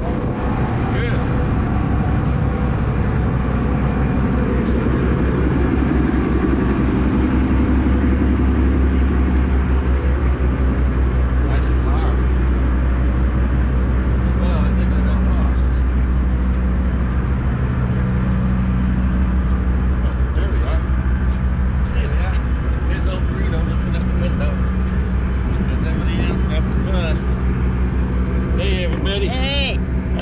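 A car ferry's diesel engines running with a steady low drone and several steady hum tones, heard from the vehicle deck.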